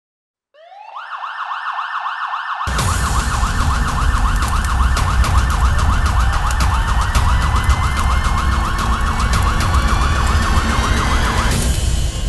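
Emergency vehicle siren in a fast, warbling yelp, joined about two and a half seconds in by a loud low rumble full of crackles, with a slower rising tone over it in the second half. The siren cuts off shortly before the end.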